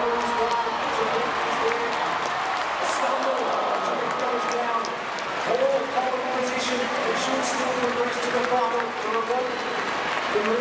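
Stadium crowd cheering and applauding during a race, with a public-address announcer talking over the noise.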